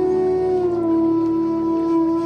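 Bansuri bamboo flute holding one long, slow note that slides slightly down about half a second in, over a low steady drone.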